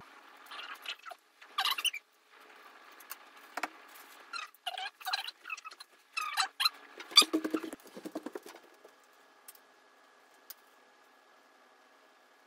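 Parchment paper rustling and crinkling in irregular bursts as cut-out cookie dough is handled and peeled from it; the bursts thin out in the last few seconds.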